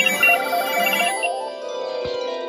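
Several telephones ringing at once, their electronic ringtones overlapping: a fast two-note warble and quick high beeps over steady tones. The warble and beeps stop about a second and a half in while the other phones keep ringing.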